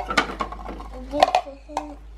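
Hard plastic clicking and clattering as the green waste bin of a Bruder toy garbage truck is pulled off its lifter arm and handled: several sharp knocks, the loudest just over a second in.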